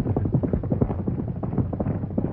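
Horses galloping on a dirt trail: a rapid, overlapping run of hoofbeats over a steady low hum.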